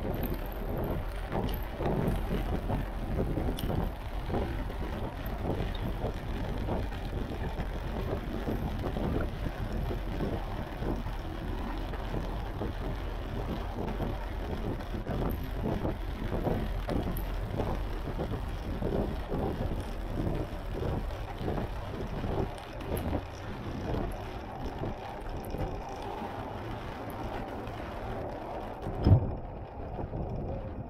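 Wind buffeting the microphone of a camera on a moving bicycle, with tyre and road noise from riding over a wet surface. A sharp thump about a second before the end.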